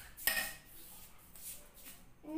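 A steel knife clinks once against a stainless-steel mixer jar about a quarter second in, ringing briefly, followed by a couple of fainter taps as banana slices are cut into the jar.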